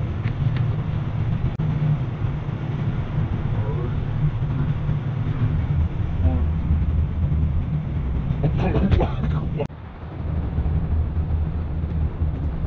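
Wind buffeting the microphone: a loud, uneven low rumble that dips suddenly just before ten seconds in. Faint voices and a short cluster of clicks and knocks come through about nine seconds in.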